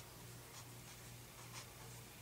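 Faint scratching of a pen writing on paper, in short strokes, over a steady low hum.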